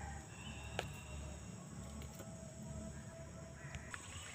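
Faint outdoor riverside ambience: a low steady rumble with a thin, steady high insect buzz, and one small click a little under a second in.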